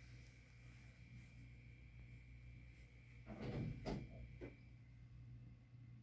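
Low room hum with a cluster of three soft knocks a little past halfway.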